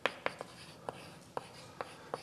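Chalk writing on a blackboard: about six sharp, irregular taps with faint scratching between them.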